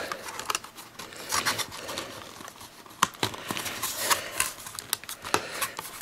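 Small plastic toy parts being handled and pressed together by hand: scattered clicks and taps with light rustling as a top piece is fitted on.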